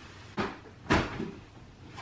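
A blanket being shaken out and flung over a bed: two short flapping thumps about half a second apart, the second louder.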